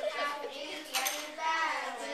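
Children's voices chattering in a small room, with a sharp light clatter about a second in.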